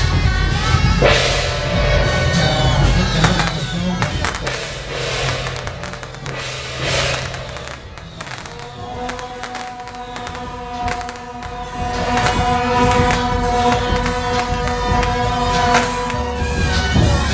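Loud temple-procession music with heavy low drumming and many sharp cracks. About halfway in, a steady held tone of several notes comes in and carries on to the end.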